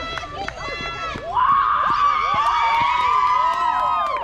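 A group of girls' voices shouting together in one long, high, sustained team cheer from about a second in. Shorter excited shouts come before it.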